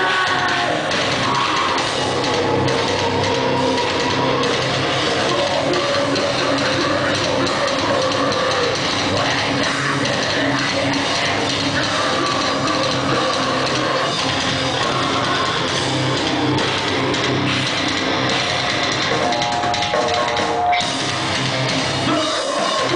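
Live metalcore band playing loud, with distorted electric guitars and a drum kit.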